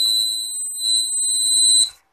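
An Arduino project's electronic buzzer sounding a steady, high-pitched security-alarm tone. It is set off because the ultrasonic sensor has detected a vehicle entering the prohibited zone. The tone cuts off abruptly near the end.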